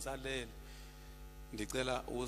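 Steady electrical mains hum from the microphone and speaker system, heard on its own for about a second in the middle, between a man's voice at the start and again near the end.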